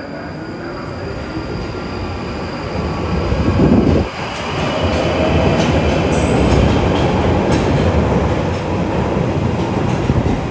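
London Underground Northern line tube train (1995 stock) running through the platform at speed. Its wheel-and-rail rumble builds to a loud peak about four seconds in, then stays loud as the train moves past and away.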